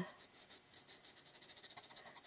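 Faint pastel pencil scratching across sand-grain pastel paper, picking up into rapid short strokes about a second in.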